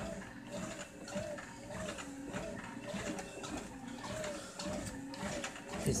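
ProForm Crosswalk Sport treadmill running at low speed under a walker, its motor whine wavering in pitch about twice a second with each step. Soft, regular footfalls sound on the moving belt.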